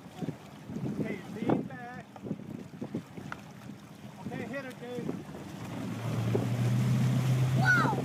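Motorboat engine running while towing a water-skier, its steady drone coming up louder about three quarters of the way in as the boat speeds up, with wind on the microphone, water rushing and people calling out.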